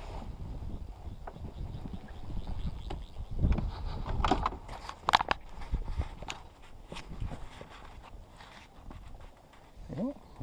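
Scattered knocks, scrapes and clicks of fishing gear being handled in an inflatable boat, with low wind rumble on the microphone; the sharpest clicks come about four and five seconds in.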